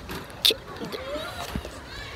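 Faint distant voices, with a short, sharp hiss about half a second in.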